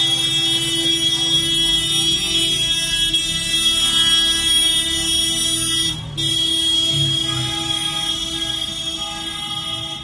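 Several car horns held down together, a sustained chord of steady tones from passing motorcade cars, with a brief gap about six seconds in before the honking resumes. Engines and tyres of the slow-moving cars rumble underneath.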